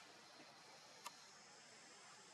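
Near silence: faint background hiss, with one short click about a second in.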